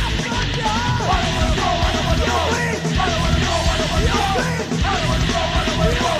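Hardcore/thrash metal band recording with funk influences, playing steadily and loud, with a high lead line that bends and wavers in pitch over a heavy low end.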